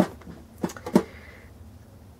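Metal gingerbread-house tin handled in the hands: a sharp click, then two short knocks within the next second.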